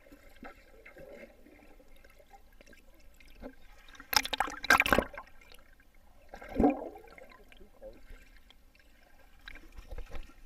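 Underwater pool sound as heard by a GoPro below the surface: a low, muffled churning of water, broken by a loud burst of bubbling and splashing about four seconds in that lasts about a second, and a shorter burst a couple of seconds later from swimmers moving close to the camera.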